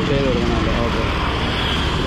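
A voice speaks briefly near the start over steady, loud road-traffic noise.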